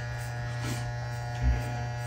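Andis T-Outliner magnetic-motor hair trimmer running with a steady buzz.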